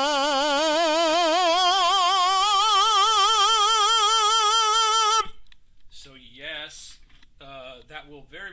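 A tenor sings a classical 'ah' with steady vibrato, rising up the scale through his passaggio with some velopharyngeal opening (nasality) as he ascends. He stops abruptly about five seconds in, followed by a few quiet spoken words.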